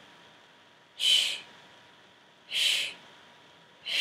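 A person exhaling sharp 'shh' hisses through the teeth, one short hiss about every second and a half, in time with each repetition of a bridge exercise.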